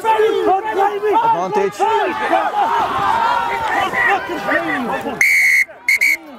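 Several men shouting over one another in a rugby maul, then a referee's whistle blown near the end: one blast of about half a second, then a short second blast.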